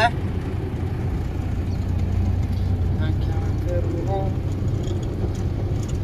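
Steady engine and road rumble of a Mahindra pickup truck on the move, heard from inside the cab, with faint voices about halfway through.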